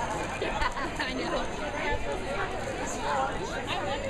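Crowd of spectators chatting, many indistinct voices overlapping.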